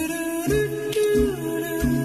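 Background music: a wordless hummed vocal melody of a few held notes that step up and down in pitch.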